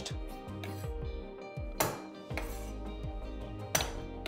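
A chef's knife knocking on a wooden chopping board as garlic cloves are roughly bashed and chopped: a couple of sharp knocks, about two seconds in and near the end, over steady background music.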